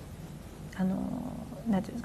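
A pause in a spoken lecture: a male lecturer's short, drawn-out hesitation sound at one steady pitch about a second in, then a brief second utterance near the end, over quiet room tone.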